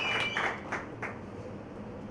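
Audience applause dying away: the clapping thins to a few scattered claps within the first second, then the room goes quiet.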